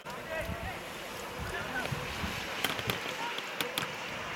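Football players shouting and calling out on the pitch. There are several sharp knocks between about two and a half and four seconds in.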